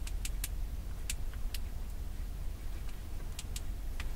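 Steady low rumble of a car cabin, with about seven sharp, irregular clicks of long fingernails tapping on a phone screen, several close together near the start and a pair later on.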